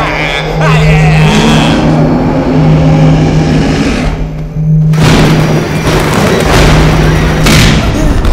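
Horror film soundtrack: a pulsing low drone with music over it. The drone drops away briefly about four and a half seconds in and comes back with a sudden loud boom.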